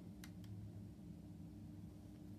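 Near silence: quiet room tone with a faint steady hum, and two faint clicks within the first half second.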